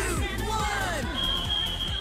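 Upbeat workout music with a fast, steady kick-drum beat and descending sliding tones. A steady high beep starts about halfway through and is held to the end.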